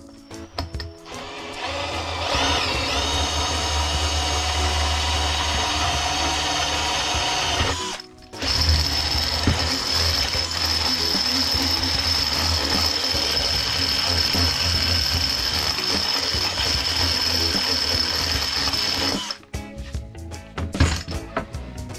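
Cordless drill running under load as it bores holes into a lacquered wooden board, with a steady high motor whine. It runs twice, for about seven seconds and then about eleven, with a short stop about eight seconds in.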